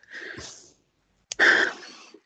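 A person's breath noises over a video-call microphone: a soft breathy burst, then a louder one about a second later that starts with a click.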